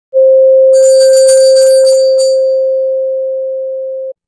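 An intro sound effect: one steady ringing tone, fading slowly after about two seconds, with a bright jingle of chimes over it from under a second in until just past two seconds.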